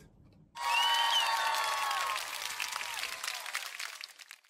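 Canned applause and cheering sound effect. It starts about half a second in, then fades out over the last second or so.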